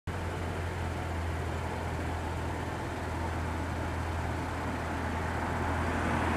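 Light aircraft piston engine idling: a steady low hum.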